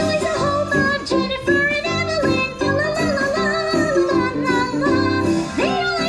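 A cartoon monster character's voice singing a comic song over an upbeat instrumental backing, the voice jumping and wavering between notes.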